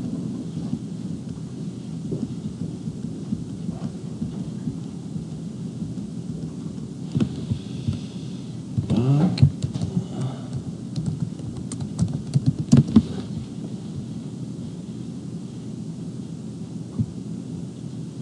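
Computer keyboard typing in a cluster of clicks about halfway through, over a steady low rumble of room noise.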